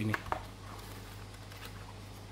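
Hard plastic VR headset being handled, with a couple of sharp clicks and a few fainter ticks as its hinged front phone cover is opened, over a steady low hum.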